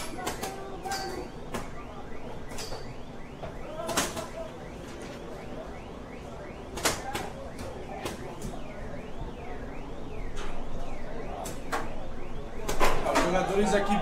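Paintball markers firing across the field: scattered sharp pops at irregular intervals, the loudest about four and seven seconds in, with a few more in quick succession near the end. Distant voices of players calling carry underneath.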